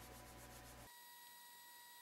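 Near silence: faint room tone that drops to almost nothing about a second in.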